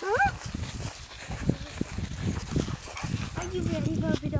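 A dog close by, giving short high-pitched whines at the start and again near the end, with low irregular rustling between.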